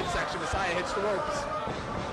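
Wrestling match audio: indistinct voices from the crowd and a few dull thuds of bodies hitting the ring.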